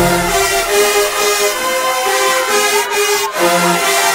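Kentucky State University marching band playing from the stands: long held chords, moving to a new chord about three seconds in.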